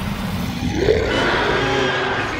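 A deep, continuous rumbling roar from film sound effects of a magical creature or energy, with a cry-like sound rising and then falling about a second in.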